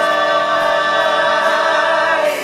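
Male a cappella vocal group singing one long held chord in close harmony, with no instruments.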